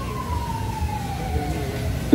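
A siren-like sound effect through a PA system: a single tone sliding slowly down in pitch, dying away near the end.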